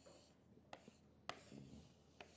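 Chalk on a chalkboard, faint: a few short taps and scraping strokes as lines are drawn, the clearest stroke a little past the middle.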